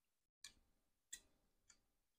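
Near silence broken by three faint clicks: a knife tapping against the inside of a glass jar as it pushes sliced peppers down into the brine to work out bubbles and spread the spices.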